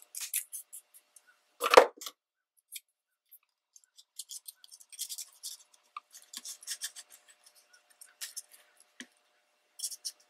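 Scissors cutting scrapbook paper, the loudest snip about two seconds in, followed by light rustling and tapping as the paper pieces are handled.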